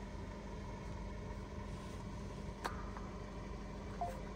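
Faint, steady mechanical hum with one short click a little past halfway.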